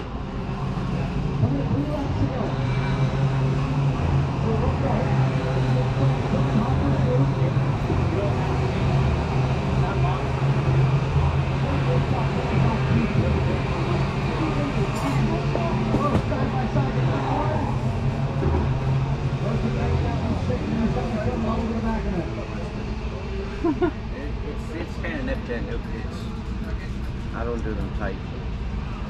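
An engine running at a steady speed for about twenty seconds, then dropping away, with voices in the background.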